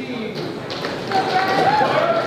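Voices of people at a weigh-in, with one man's drawn-out call rising above the chatter about a second in and a few faint clicks.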